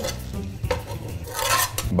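Plates and cutlery clinking and scraping at a dining table during a meal. A few scattered clicks and a short scrape come a little past halfway, over a steady low hum.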